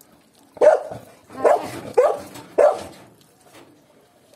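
A dog barking four times in quick succession, loud, over about two seconds starting about half a second in.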